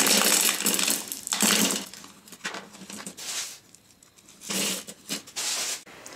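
Expanded clay pebbles clattering against each other and the plastic container as they are poured and pressed around a hydroponic net cup. The rattling runs for about two seconds, then comes in a few shorter bursts.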